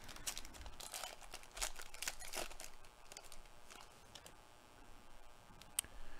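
Plastic wrapper of a 2022 Topps Tribute trading card pack being torn open and crinkled by hand, busiest in the first three seconds, then quieter handling of the cards with a short sharp click near the end.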